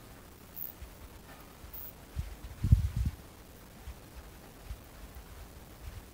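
Faint handling sounds of a wire and a plastic zip tie being worked by hand, with a few low, dull bumps about two to three seconds in.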